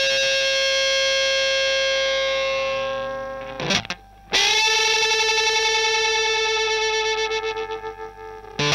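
Electric guitar through a germanium-transistor Buzzaround-style fuzz pedal (Madbean Bumblebee) fitted with low-to-mid gain transistors (hFE 66, 69 and 75): two long sustained fuzzed notes. The first fades slowly and stops about three and a half seconds in; the second starts just after and wavers as it fades near the end.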